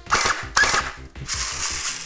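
WELL D-90F electric airsoft gun (a P90 copy) firing: two single shots about half a second apart, each a sharp crack of the gearbox cycling, then a short continuous burst near the end.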